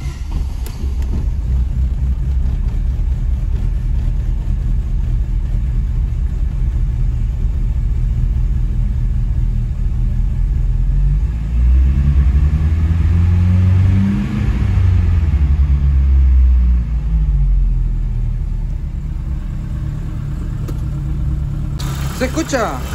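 A Chevrolet Corsa Classic's four-cylinder petrol engine starting up and idling; about twelve seconds in its speed rises and falls back once. The idle is fairly quiet and close to normal but not perfectly smooth, which the owner puts down to worn spark plug wires and injectors needing cleaning after poor maintenance.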